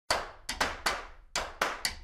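A quick, irregular series of about seven sharp cracks in two seconds, each with a short echo.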